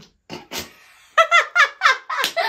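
A person laughing: two short breathy puffs early on, then from a little past halfway a loud run of quick, high-pitched 'ha' pulses, about four or five a second.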